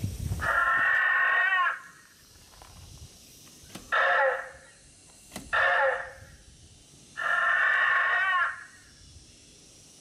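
Velociraptor costume's built-in speaker playing dinosaur call sound effects. Four thin, tinny calls with no low end: a long one near the start, two short ones in the middle, and another long one near the end.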